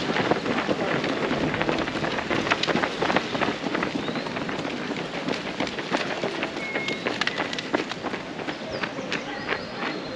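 Footsteps of many runners on a tarmac road as a pack of fell runners passes close by. The footfalls thin out and get quieter as the pack goes by.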